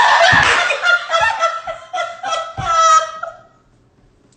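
Hearty laughter in rapid, high-pitched bursts that stops about three and a half seconds in.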